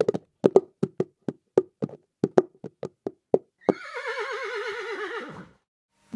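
Horse sound effect: hooves clip-clopping in a steady rhythm of about four to five strikes a second for three and a half seconds, then a single horse whinny with a wavering, slowly falling pitch lasting under two seconds.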